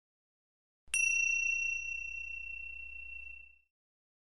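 A single bell-like chime struck about a second in, one clear high tone that rings and fades away over about two and a half seconds.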